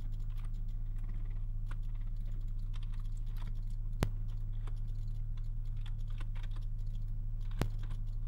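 Scattered clicks of a computer keyboard and mouse, two of them sharper, about four seconds in and near the end, over a steady low electrical hum.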